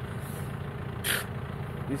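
A tractor engine idling steadily, with a short hiss about a second in.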